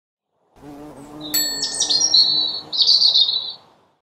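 Bird-like chirping and tweeting over a low steady hum. It begins with a sharp click about a second and a half in and fades out just before the end.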